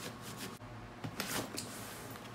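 Soft rustling and scraping of a nylon backpack being handled as its front compartment is pulled open, in a few short rustles.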